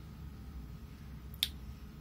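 A single short, sharp click about one and a half seconds in, over a faint low steady hum.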